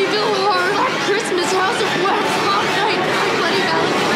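Indistinct talking voices, with no other clear sound standing out.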